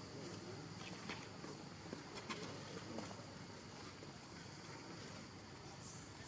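Faint outdoor ambience: a steady high drone of insects, with a few short faint clicks.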